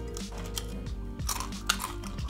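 Background music, with a few short, sharp crunches of Tapatio Doritos tortilla chips being bitten and chewed in the second half.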